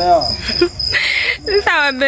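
A cricket chirping in a steady run of quick, evenly spaced high pulses, under louder excited men's voices at the start and near the end.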